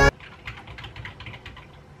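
Faint typing on a computer keyboard: a quick, irregular run of light key clicks.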